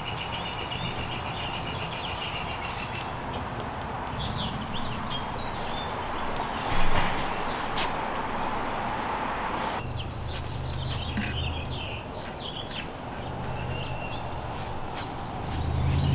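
Small birds chirping now and then over a steady hiss. A low hum comes in about ten seconds in.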